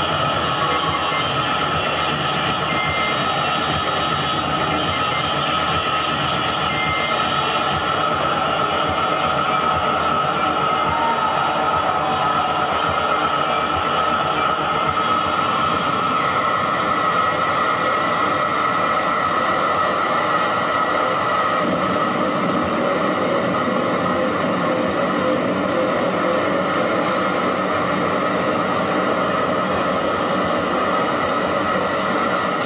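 Live electronic noise music from laptops and a keyboard played through amplifiers: a loud, steady, dense wall of noise with a few held tones. A new, higher held tone comes in about halfway through.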